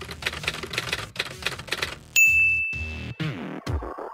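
Typewriter sound effect: rapid key clacks, then a single bell ding about halfway through, followed by electronic music near the end.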